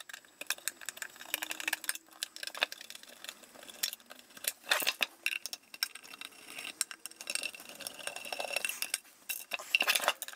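Irregular light metallic clicks and clinks of a screwdriver working the small screws of an avionics control panel's case, mixed with the knocks of the case being handled and turned over.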